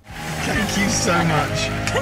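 A car driving along a city street, its road and engine noise fading in and then holding steady, with a man's voice over it.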